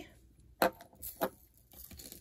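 A few short clicks and clinks of a metal chain and a stone heart pendant being handled and set down on a tabletop.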